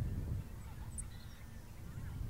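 Outdoor natural sound: a steady low wind rumble on the microphone with faint, scattered bird calls. A couple of very short, high chirps come about a second in.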